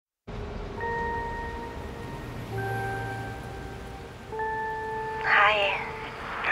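Three soft, sustained chime notes, each held for about a second and a half, over a low steady rumble inside a bus. A short spoken word comes in near the end.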